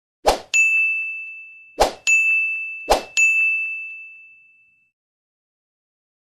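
Three end-screen sound effects, each a short pop followed by a bright bell-like ding that rings and fades. They come about a second and a half apart, and the last ding dies away a little before five seconds in.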